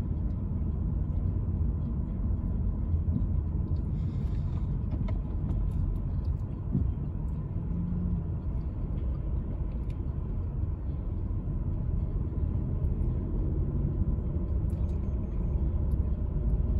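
Steady low rumble of a car driving, its engine and tyre noise heard from inside the cabin.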